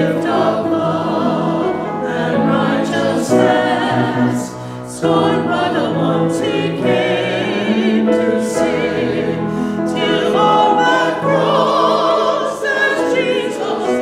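Small mixed choir of men and women singing an anthem in held phrases with vibrato, with a short break between phrases about five seconds in.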